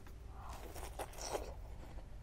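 Bite into a juicy red wax apple, then chewing: a few soft, crisp crunches in quick succession.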